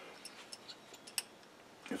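A few faint, light clicks of a small metal tap and its holder being handled, with one sharper click about a second in.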